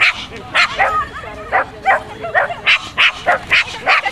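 Cardigan Welsh Corgi barking rapidly and repeatedly, short sharp barks about three a second, with no break.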